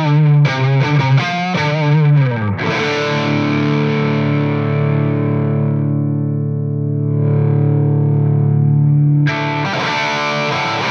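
Electric guitar played through an MXR Sugar Drive overdrive pedal: a quick lead phrase with string bends and vibrato, then a chord left ringing for several seconds. While it rings, its treble fades and then brightens again as the pedal is adjusted by hand. Fresh playing starts near the end.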